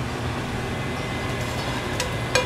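A steady, even hiss with a low hum beneath it, with no knocks or clinks.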